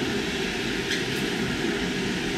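Blower of a small 4200 BTU marine air conditioner running and blowing hard out of a round supply vent. The steady rush of air sounds like an airplane.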